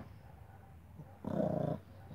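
A small dog gives one short play growl, about half a second long, beginning about a second and a quarter in, while wrestling with another dog.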